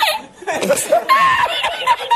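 A man laughing hard in rapid, high-pitched bursts.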